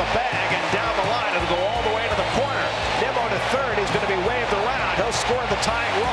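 Ballpark crowd cheering and shouting a home-team hit, many voices overlapping in a steady roar, with a few sharp claps near the end.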